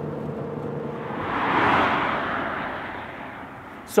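A single whoosh of noise that swells about a second in, peaks, and fades away over the next two seconds.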